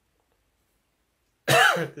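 Silence for about a second and a half, then a man coughs once, loudly and briefly, into his fist.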